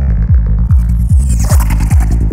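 Psytrance track: a steady kick drum about every 0.4 seconds with a rolling bassline between the kicks. A hissing synth sweep comes in about two-thirds of a second in and falls in pitch around a second and a half.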